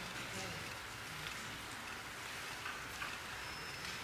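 Quiet room tone: a faint, even hiss with a couple of soft ticks.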